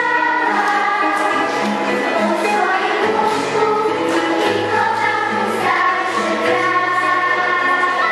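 Children's girls' choir singing a song together, over a low instrumental accompaniment whose bass notes change every second or so.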